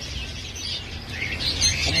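Peach-faced lovebirds chirping in a crowded cage, the chirps growing busier in the second half, over a low background rumble.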